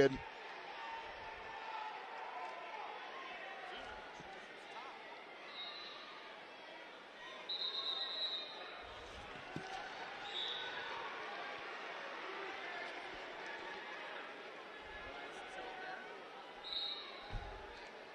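Arena crowd murmur in a large hall, broken by a few short high referee's whistle blasts; the longest and loudest comes about eight seconds in. A few dull thumps are scattered through it, typical of bodies hitting a wrestling mat.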